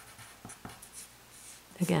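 Pencil writing on paper: a wooden pencil's graphite scratching out a few short, separate strokes.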